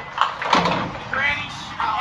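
Arcade mini-bowling ball released and running down the lane, with a light knock just after the start. Indistinct voices and steady arcade background din run throughout.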